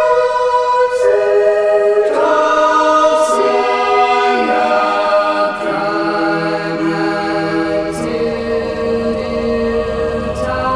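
Wordless, choir-like vocal harmonies. Sustained notes stack up as voices enter one after another, building a thick chord that shifts every second or two.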